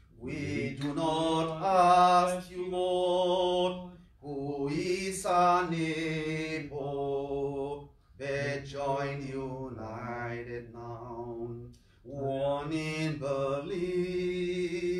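A lone man's voice singing an offertory hymn without accompaniment, in slow, long-held phrases with brief breaths between them.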